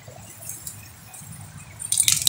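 Dogs moving about on grass, a faint low rustle with a couple of small clicks; right at the end a dog's collar tags start jingling.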